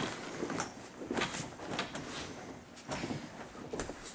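Soft, scattered bumps and rustles of a person rolling over on a gym mat with bare feet pressed against a chain-link cage wall.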